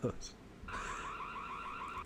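Faint electronic alarm warbling rapidly, about ten chirps a second, starting a little under a second in.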